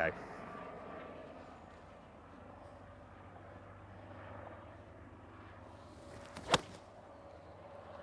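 A single sharp click of a 9-iron striking a golf ball off the tee, about six and a half seconds in, over quiet open-air ambience. The strike is hit pretty well but slightly out of the bottom of the club.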